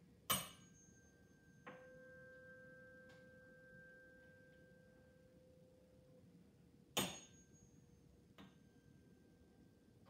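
A tuning fork, the lower-pitched of two, struck about two seconds in and ringing a single steady pure tone that fades away over about four seconds. Sharp knocks just after the start and about seven seconds in are the loudest sounds, with a lighter tap after the second.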